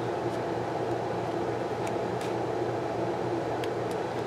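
Steady low room hum, with a few faint soft ticks from paper sticker sheets being handled.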